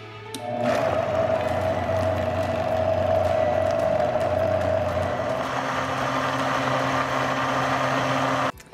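High-powered countertop blender starting up and running steadily, blending frozen bananas, frozen berries, spinach and milk into a thick smoothie. Its pitch shifts lower about five and a half seconds in.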